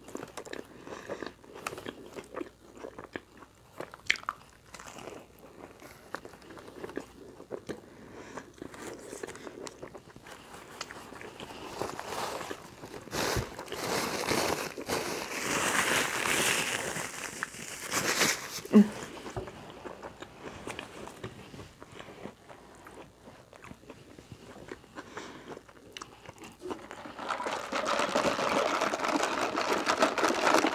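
Close-miked biting and chewing of a fried chalupa shell: crunching and crackling bites, with mouth sounds between them. The chewing gets louder about halfway through, and there is another loud stretch near the end.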